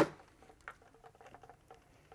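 Quiet handling of sewn cotton fabric: faint rustles and small scattered taps, with one short sharp sound right at the start.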